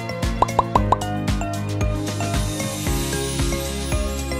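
Background music with a steady beat, with four quick rising pop sound effects in a row about half a second in.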